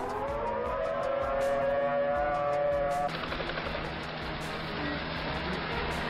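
Civil defense warning siren winding up, rising in pitch to a steady wail, sounded as a tornado warning. It cuts off abruptly about three seconds in, and a steady noisy rumble follows.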